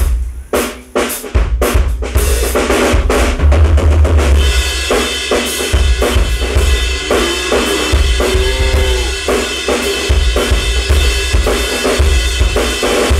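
A drum kit being played: bass drum kicks and snare hits in a steady beat, joined by a continuous cymbal wash from about four seconds in.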